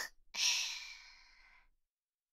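A woman's breathy sigh: one soft exhale lasting about a second that fades out.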